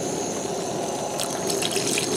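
Water poured into a cast-iron Dutch oven of hot, thickening gravy, the splashing picking up a little over a second in, over a steady simmer from the pot; the water is added to thin the gravy so it won't scorch.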